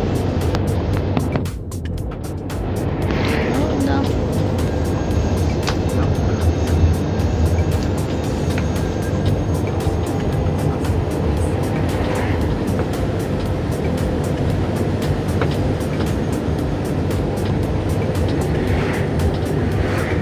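Steady low engine and road rumble inside a moving bus, dipping briefly about two seconds in, with music playing over it.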